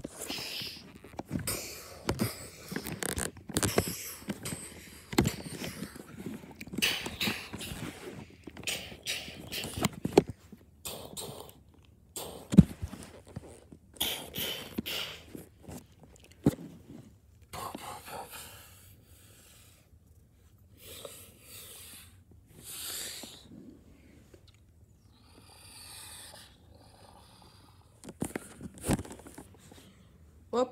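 Breathy mouth noises in a string of irregular short bursts, thinning out in the second half. A sharp click about twelve and a half seconds in is the loudest sound, and another comes near the end.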